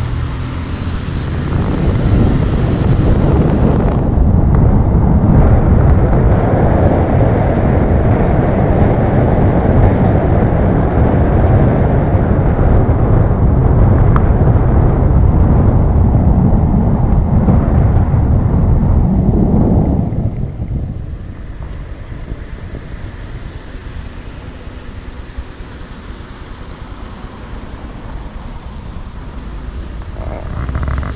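Road and wind noise from a moving car, a dense low rumble. It swells about two seconds in and drops sharply to a quieter level about two-thirds of the way through.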